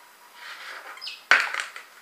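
Breath blown into a latex balloon stretched around a phone, then a brief high squeak of the rubber and a sharp snap, the loudest sound, followed by a short hiss as the balloon closes tight over the phone.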